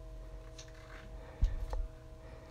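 A lollipop stick being pushed hard down into a whole apple by hand: a dull thump about one and a half seconds in, then a small click, over a faint steady hum.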